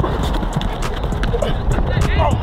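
Quick, irregular footfalls of players sprinting on artificial turf, with voices in the background.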